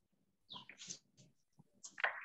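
Near silence with a few faint, short breaths or mouth sounds from a person, about half a second to a second in.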